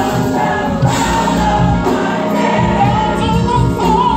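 Gospel mass choir singing with instrumental accompaniment, one voice wavering above the sustained choir.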